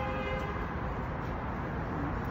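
Steady city street traffic noise, with a short car horn toot at the very start that sounds as one flat tone.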